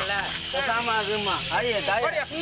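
Several people's voices calling out together over a steady hiss, with no clear words.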